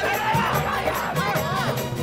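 Several people shouting at once, their voices overlapping, over background music.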